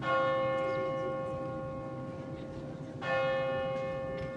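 Church bell of Roskilde Cathedral tolling: two strikes about three seconds apart, each ringing on and slowly fading.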